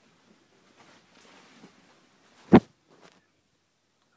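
Faint rustling, then a single sharp knock about two and a half seconds in and a lighter click just after: handling noise as the camera, which had been set down, is picked up again.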